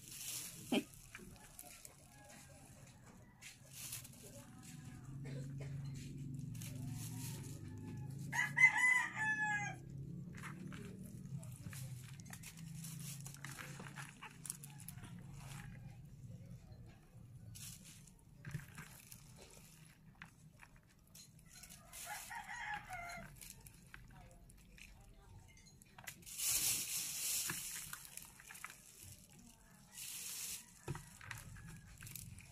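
A rooster crowing once, loudly, about nine seconds in, with a second, shorter call later. Under it are light crackles and rustles from hands pulling apart a pot of mung bean sprouts, and a louder rustle near the end.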